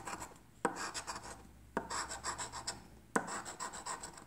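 A metal scratcher coin scraping the coating off a scratch-off lottery ticket, in three bursts of quick rasping strokes, each starting sharply.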